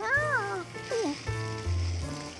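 Cartoon monkey voice making a curious rising-then-falling "ooh", followed about a second in by a short falling note, over light background music.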